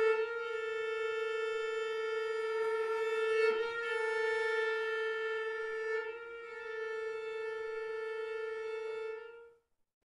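A string quartet holding one long, steady bowed note, a B natural, as the closing chord of a movement; it cuts off about nine and a half seconds in.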